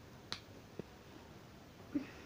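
A sharp click about a third of a second in and a softer tick a moment later, in a quiet room; a short voice sound begins right at the end.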